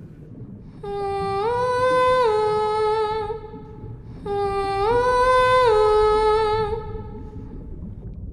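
A woman's voice singing a wordless, humming call twice, the same short melody each time: a low note, a step up, then back down to a held note. It is the mermaid's song-call summoning the sea creatures.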